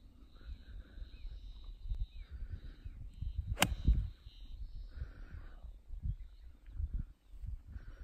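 A golf ball struck once by a 52° approach wedge: a single sharp click about three and a half seconds in. Under it is a low, gusty rumble of wind on the microphone and faint bird calls.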